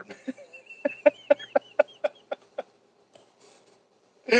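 A man laughing hard: a rapid run of short breathy laugh pulses, about five a second, with a thin high squeal over them, tailing off at about two and a half seconds.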